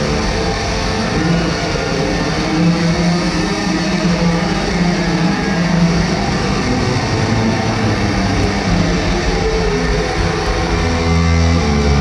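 Electric guitar solo played live through a concert PA, heard from the audience, mostly held sustained notes. Heavy low bass notes come in near the end.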